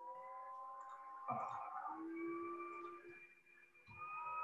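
Faint steady whistling tones, several at once, that step to new pitches a little over a second in and again near two seconds, with a brief rush of noise between them.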